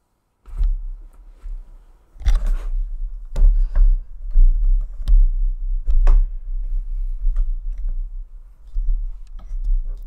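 A desk microphone knocked over and then handled: heavy low handling rumble with a run of knocks and clicks, loudest from about two to six seconds in.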